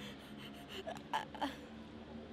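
A person's short breaths: a few quick, breathy puffs about a second in, over a faint steady background hum.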